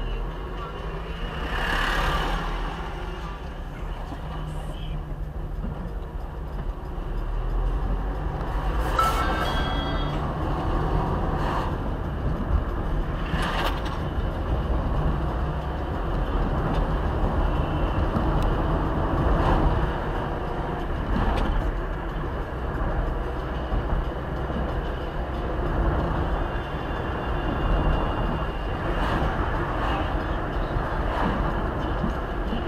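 Inside a car: engine and tyre rumble as it pulls away from a near stop and speeds up along the road, with a few short knocks.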